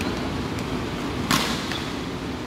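A single sharp smack about a second and a third in, over a steady background hiss.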